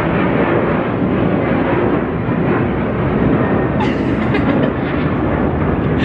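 Jet airliner passing overhead on its approach to or departure from a nearby airport: a loud, steady roar of engine noise with no breaks.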